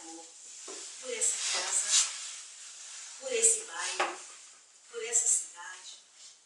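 Speech only: a woman talking in a small room, her voice with sharp hissing 's' sounds.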